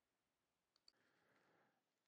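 Near silence, with two very faint clicks a little under a second in.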